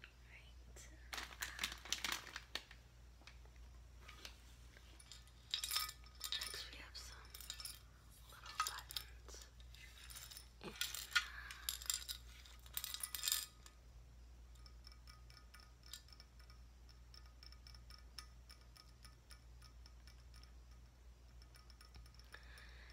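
A clear plastic container of foam letters and pom-poms shaken, then a glass jar of buttons shaken and tilted, the buttons clinking against the glass in several bursts of rattle. After about 14 seconds the jar gives only a run of faint, quick clicks as the buttons shift.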